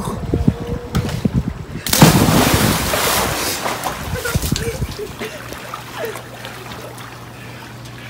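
A person jumping into a backyard above-ground pool: a loud splash about two seconds in, its noise dying away over the next few seconds. Before it, wind buffets the microphone.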